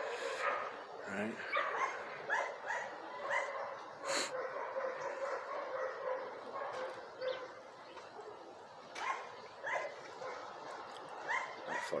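A dog barking repeatedly in short, high yips, in runs of several with pauses between.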